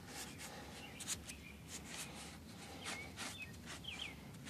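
Quiet outdoor background with a few short bird chirps in the last second or so, and a few faint brief rustles scattered through.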